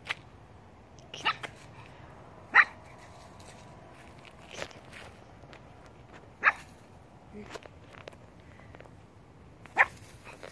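Young pug puppy barking in short, high yaps, about five of them a second or two apart.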